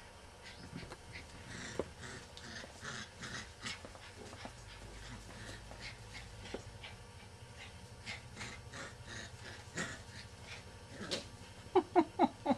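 Golden retriever puppies playing on a tiled floor: scattered light clicks and scuffles of paws and claws. Near the end come a few short, high puppy yips.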